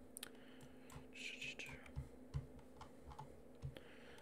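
Faint scattered clicks of a computer keyboard and mouse, with a steady low electrical hum underneath.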